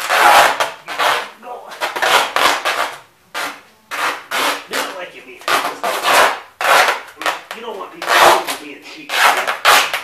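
Duct tape being pulled off the roll and wound around a towel-wrapped foot, in a series of loud rips of roughly half a second to a second each, about one a second with short pauses between.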